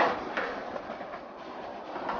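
Skateboard wheels rolling over smooth pavement, with a loud clack of the board at the start and a couple of lighter knocks within the first second or so.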